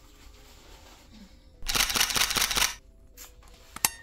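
A jacket zipper pulled up in one quick, noisy zip of about a second, with the fabric rustling. A single sharp click follows near the end.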